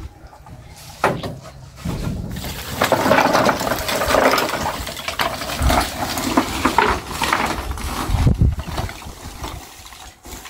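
Dry coconut shell pieces clattering and rattling onto a wooden deck as they are tipped from a sack. This goes on as a dense crackle of scraping shells while they are raked and spread out by hand to dry.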